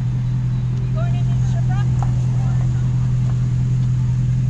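A vehicle engine idling with a loud, steady low hum, with faint voices in the distance about a second in.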